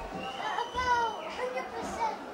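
A young boy's high-pitched voice, one short utterance lasting about a second, its pitch falling near the end.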